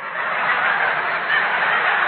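Studio audience laughing at a punchline: a loud, steady crowd laugh that breaks out suddenly, heard on a narrow-band 1938 radio broadcast recording.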